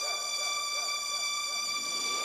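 Quiet break in a rap track: a high synthesizer chord held steady, several tones sounding together, with faint wavering notes beneath.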